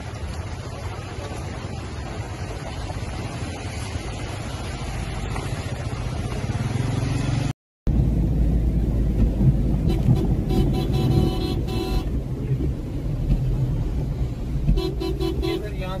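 Steady rushing noise of floodwater and wind for the first half. After a cut, the low rumble of a car driving along a flooded road, heard from inside the cabin, with car horns honking twice: once for about two seconds, then briefly near the end.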